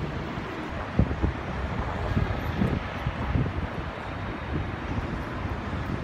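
City street noise: a steady rumble of traffic, with wind buffeting the microphone in uneven gusts.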